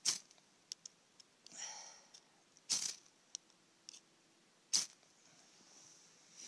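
Ferrocerium fire-starter rod (flint striker) struck three times, each a short sharp rasp about two seconds apart, with a softer scrape and small ticks between. The strikes throw sparks onto a pile of wood shavings that fails to catch.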